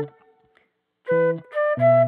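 Flute melody over short strummed guitar chords. A held note dies away at the start, there is a break of under a second, and then the guitar chords and flute come back in.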